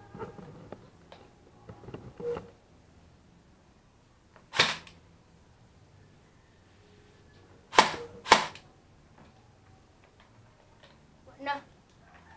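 Airsoft rifle firing three single shots, each a sharp crack: one about four and a half seconds in, then two about half a second apart near eight seconds in.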